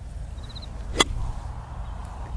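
A five-iron striking a golf ball off turf on a short half swing: one sharp click about a second in.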